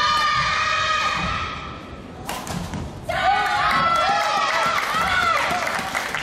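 Girls' voices shouting and calling out in long, high, held cries across a large echoing sports hall, with one sudden loud thud a little past two seconds in.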